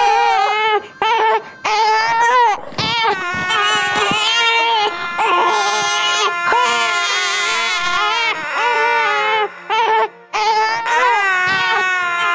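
Newborn baby crying: a run of loud, wavering wails with short breaks between them, the first cries of a just-delivered infant. A steady held tone runs underneath.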